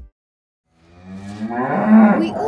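A cow mooing: one low call that starts almost a second in and grows louder toward the end.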